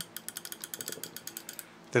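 Metal ratchet pawl on the upper drive gear of a single-motor robot, clicking rapidly as the gear turns in its free direction, so this ratchet is overrunning rather than locking. The clicking stops about a second and a half in.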